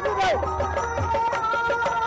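Devotional kirtan music: rope-laced two-headed barrel drums played by hand in a steady, fast beat, with a held, wavering melody above them.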